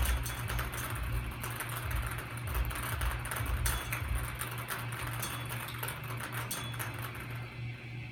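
Wire bingo-style ball cage being hand-cranked, the numbered balls tumbling and rattling against the wire and each other in a continuous clatter of small clicks.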